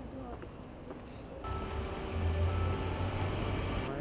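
A motor vehicle engine running close by: a low rumble with a steady hum that comes in suddenly about one and a half seconds in over faint street ambience and cuts off abruptly just before the end.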